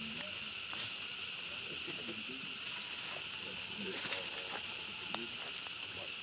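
A steady high insect drone with people talking quietly now and then, and a few light clicks.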